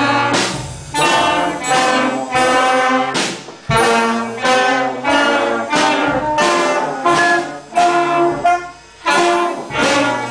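A school band of saxophones, clarinets and brass playing a tune in short phrases, with the notes changing about once a second. There is a brief break near the end before the band comes back in.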